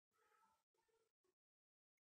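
Near silence, with no audible sound.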